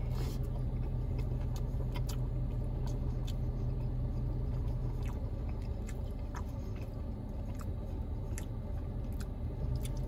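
Close-miked chewing of a folded pizza sandwich: a bite right at the start, then wet smacks and clicks of the mouth, a few a second, over a steady low hum.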